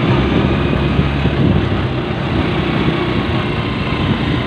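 Motorcycle engine of a tricycle (motorcycle with sidecar) running steadily while under way.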